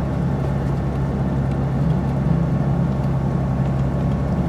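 Car engine and road noise heard inside the cabin while driving on a snow-covered road: a steady low hum over a constant rushing noise.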